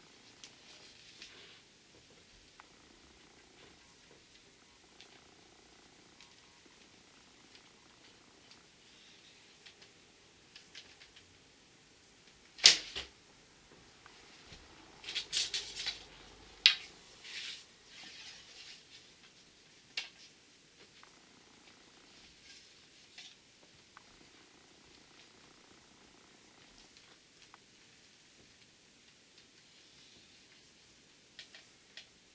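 A wooden bow shot: quiet handling of the bow and arrows, then one sharp, loud snap of the string's release a little under halfway through. A burst of clicks and clatter follows a couple of seconds later, with another sharp click and a few lighter ticks after it.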